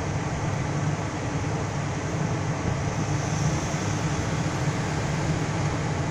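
Steady noise of a car's idling engine and air-conditioning blower, heard inside the cabin.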